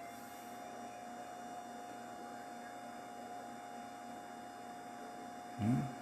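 HP 853A spectrum analyzer just switched on and running. There is a steady hum and airy whir, with faint high-pitched whines. A tone rises and levels off right at the start as it comes up.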